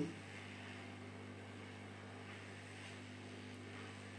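Hot air rework station blowing at low airflow while heating the solder of a phone motherboard's shielding can: a steady faint hum with a light hiss.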